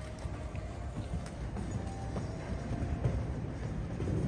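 Soft, muffled hoofbeats of a horse cantering on sand arena footing, with music playing faintly underneath.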